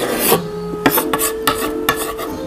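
Kitchen knife scraping and cutting against a wooden cutting board: a rasping scrape near the start, then several short cutting strokes.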